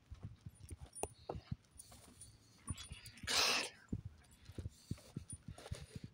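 Slow, uneven footsteps of a man walking with a bad back, scuffing over dirt and gravelly asphalt, with a short heavy exhale about three seconds in.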